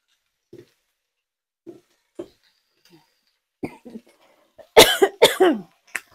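A woman coughing twice in quick succession, loud and sharp, about five seconds in. A few faint soft clicks come before it.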